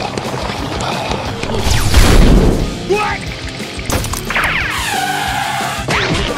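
Cartoon soundtrack of background music mixed with crash sound effects, loudest about two seconds in, and a sound gliding down in pitch near the end.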